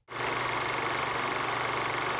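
Vintage film projector sound effect: a steady mechanical whir with a fast, even flutter, starting abruptly just after the start.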